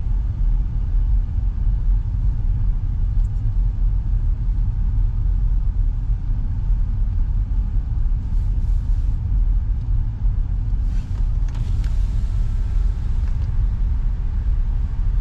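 Steady low rumble of a car heard from inside its cabin as it drives slowly, with a few faint brief noises over it near the end.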